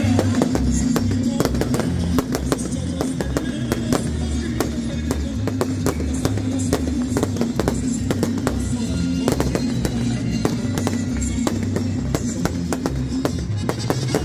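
Aerial fireworks bursting in quick, irregular succession, a dense run of sharp bangs and crackles, with music playing underneath throughout.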